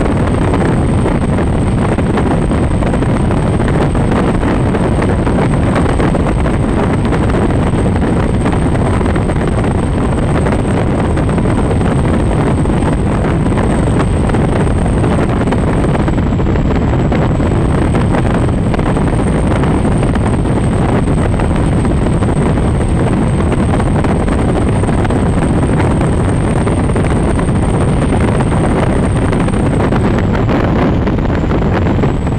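Twin Mercury Racing 1350 V8 engines of an MTI 48-foot offshore catamaran running at speed: a loud, steady drone mixed with rushing water and wind on the microphone, with a faint steady high whine above it.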